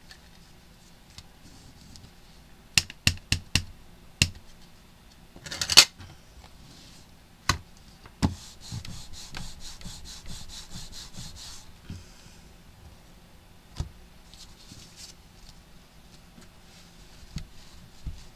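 Sharp clicks and knocks of a hinged stamping platform and rubber stamp being handled, with one short, louder scraping rustle. About halfway through comes quick, repeated dabbing of an ink pad onto the rubber stamp for about three seconds, then faint rubbing.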